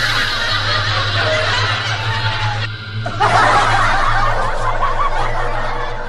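Edited-in laughter sound effect, people snickering and chuckling, over background music, with a short break about three seconds in.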